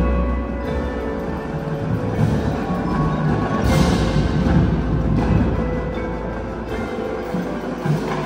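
Indoor percussion ensemble playing, led by marimbas and other mallet keyboards with low sustained notes beneath, ringing in a large gymnasium.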